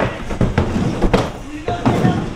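Skateboard riding a small mini half-pipe: wheels rolling, with several sharp clacks as the board and trucks strike the ramp.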